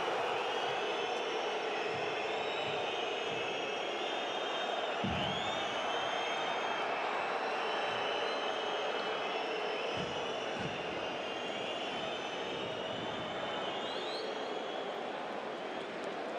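Football stadium crowd noise: a steady roar from the stands, with high whistling drifting over it.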